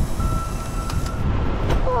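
Low, steady rumble of an off-road vehicle on the course, with one steady electronic beep lasting just over a second near the start.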